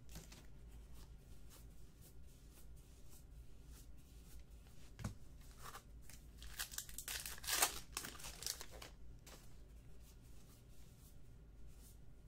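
Baseball trading cards handled and sorted by hand, with soft rustles and light clicks of cards sliding against each other. Between about six and nine seconds in there is a louder crinkle of a card-pack wrapper being torn open and handled.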